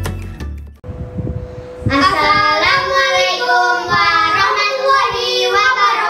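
Intro music with a low beat cuts off under a second in; from about two seconds, two boys' voices chant together in a sing-song recitation. A faint steady hum lies under the voices.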